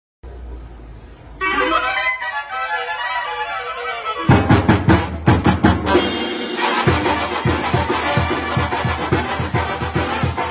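Mexican brass band of tuba, trumpets, trombones and drums playing live. The horns open with held chords a little over a second in, and about four seconds in the drums and tuba join with a steady beat.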